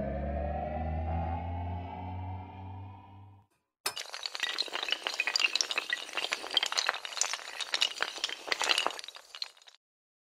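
Intro-animation sound effects: a rising synth tone over a low hum that fades out about a third of the way through. After a short gap comes about six seconds of dense clattering and tinkling, like many pieces of glass breaking and scattering, which stops just before the end.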